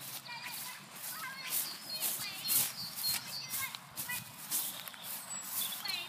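Footsteps swishing through long grass at a walking pace, a few steps a second, with faint voices in the distance.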